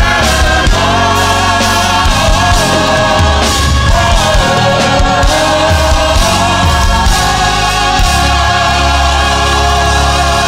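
Gospel choir singing, with instrumental backing and a steady beat.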